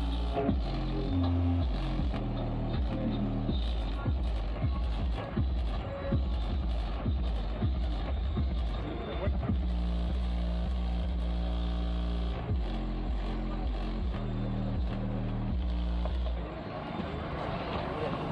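Bass-heavy music played through a car's competition sound system, deep subwoofer notes changing every second or so, until it stops near the end.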